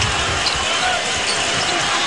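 A basketball being dribbled on a hardwood court: a series of low bounces every quarter to half second, over the steady noise of an arena crowd.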